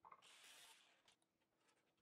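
Near silence: a faint, brief hiss in the first second, then nothing.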